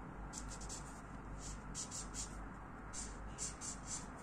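Felt-tip highlighter marker rubbing on paper in a series of short, quick strokes, faint.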